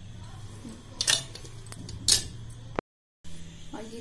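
A steel spoon clinking twice against a steel bowl, about a second apart, over a low steady hum; the sound drops out briefly near the end.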